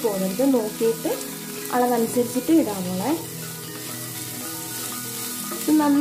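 Diced vegetables sizzling in a non-stick frying pan as a spatula stirs them. Over it runs a pitched, wavering voice-like melody, which gives way to held steady notes about three seconds in and returns near the end.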